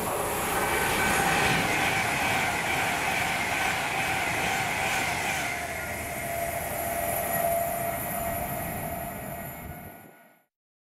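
Avanti West Coast Class 390 Pendolino electric train passing through the station at speed: a loud rush of wheel and air noise with a steady whine over it. The sound fades out near the end.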